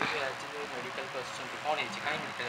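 Faint voices talking in the background over a low steady hum, with no clear non-speech event.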